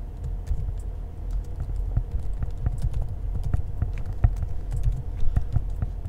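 Typing on a computer keyboard: a run of irregular keystroke clicks over a steady low hum.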